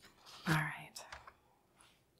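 A woman's brief, soft, breathy vocal sound about half a second in, followed by a few faint clicks and then quiet room tone.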